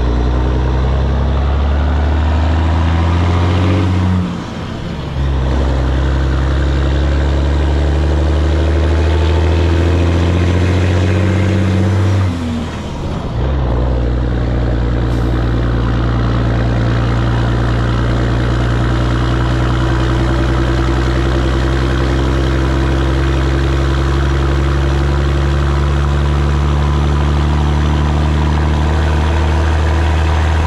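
Peterbilt 362 cabover's Caterpillar 3406B diesel pulling a loaded trailer under power, heard from behind the cab. The engine note drops out briefly twice, about four seconds in and about twelve seconds in, as gears are shifted, then pulls steadily.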